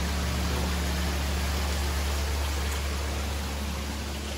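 Koi pond filtration system running: a steady low pump hum under a constant rushing hiss of moving, aerated water.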